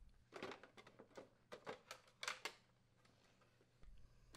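Faint clicks and light rattles of a plastic refrigerator dispenser housing being pulled free and handled, a handful of short taps in the first two and a half seconds.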